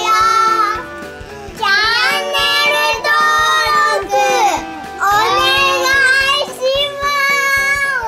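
Young girls singing together in phrases, with long held notes that slide in pitch and short breaks between lines.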